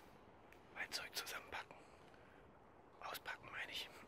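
A person whispering: two short whispered phrases, the first about a second in and the second about three seconds in.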